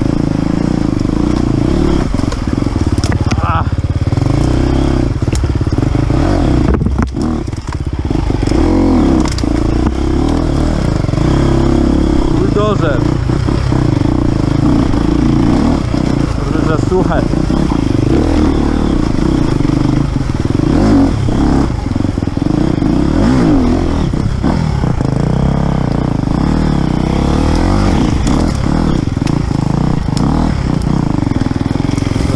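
Enduro motorcycle engine pulling at low revs, the throttle opening and closing as the bike climbs a wet, rocky creek bed, with scattered knocks and clatter from the tyres and bike over stones.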